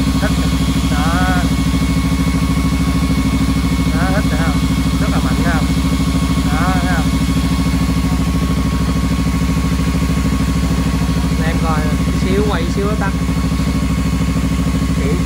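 Kawasaki Z300 parallel-twin engine idling steadily while its electric radiator cooling fan, a used Yamaha R1 fan, runs with a steady whine on top. The engine has warmed up enough for the fan to switch on.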